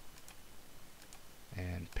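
A few faint computer mouse clicks as menu items are chosen, then a man's voice begins near the end.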